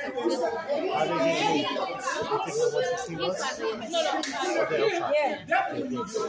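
Several people talking over one another in a large hall, indistinct chatter with no one voice standing out.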